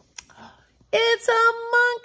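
A woman's voice calling out loudly about a second in: four short syllables held on one high, steady note in a sing-song way.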